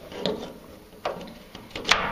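Plastic LED toolbox light being slid into its plastic mounting bracket slides: short scraping clicks about a quarter second and a second in, then a sharp click near the end as it slides into place.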